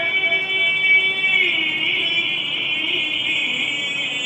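A male Quran reciter holds one long, high vowel into a microphone during melodic recitation, the pitch shifting and wavering about a second and a half in.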